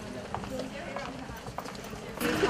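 Footsteps of a group walking on a paved alley: scattered hard taps, with faint voices in the background.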